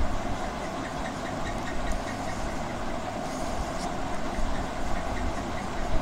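Faint, quick pencil strokes on sketchbook paper as a drawing is shaded in, over a steady low hum in the background.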